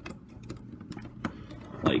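Hard plastic toy-figure parts clicking and knocking as a plastic shield piece is worked onto its square pegs: a string of small, irregular clicks.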